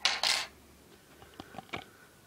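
A brief clinking clatter of hard parts in the first half second, then a few light clicks, from the action figure and its display stand being handled.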